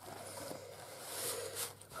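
Faint, soft rustle of paper and card as a journaling card is slid into a paper pocket in a handmade journal and the page is pressed down, swelling slightly in the second half.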